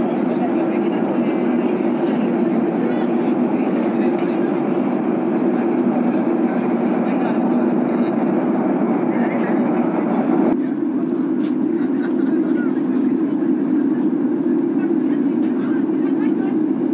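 Steady in-flight cabin noise of a Ryanair Boeing 737-800 jet airliner: a constant drone of engines and airflow. About ten seconds in, the sound changes abruptly and loses much of its upper hiss.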